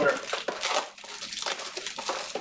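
Crinkling and rustling of packaging as a sealed trading-card hobby box is opened by hand, in a run of irregular crackles.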